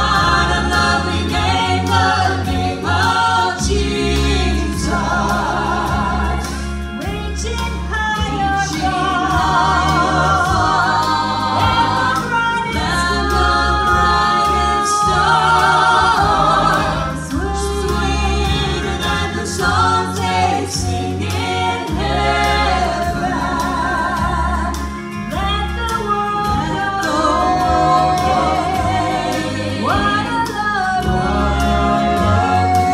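Mixed gospel quartet of men and women singing in close harmony through microphones, with vibrato on the held notes, over an accompaniment with steady bass notes.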